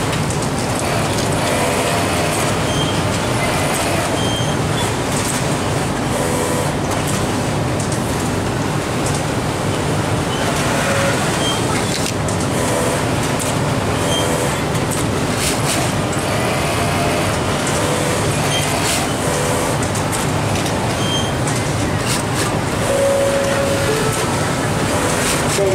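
Steady, loud din of a garment factory floor: many industrial sewing machines running together without pause, with faint voices in the background.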